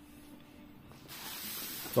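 Paper rustling as the handwritten notebook is slid along: a soft, even hiss that starts about halfway through.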